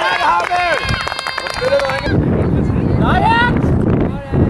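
Several high-pitched voices shouting and cheering at once around a shot on goal in a youth football match. About halfway through they cut off abruptly and give way to wind rumbling on the microphone, with one short rising shout near the end.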